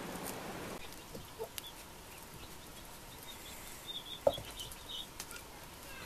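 Chickens clucking a few times, the loudest cluck about four seconds in, among small high chirps. A rustling hiss of stirred vegetation fills the first second and stops abruptly.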